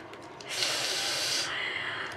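A woman's breathy exhale through the nose, a stifled laugh, starting about half a second in, lasting about a second and trailing off.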